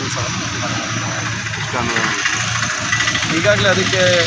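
A motor vehicle's engine running close by on the road, a steady low hum with a wider noise that grows slightly louder in the second half.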